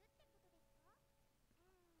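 Near silence: room tone with a few faint, brief pitched sounds that glide up and down and a faint steady tone.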